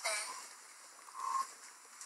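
A child's voice close to the phone microphone: the end of a loud call fading out, then a short, faint high-pitched vocal note about a second in.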